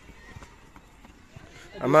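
Faint footfalls of several people running on grass, a few soft thuds. A man's voice starts near the end.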